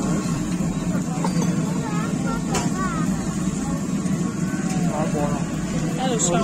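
Open-air market background: a steady low drone like a running engine, under scattered faint voices of people nearby.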